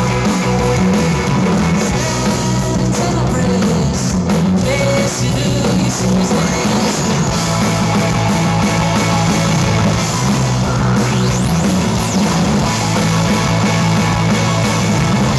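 Live rock band playing: electric guitars, bass guitar and drum kit with keyboard, loud and continuous, with a heavy steady bass line.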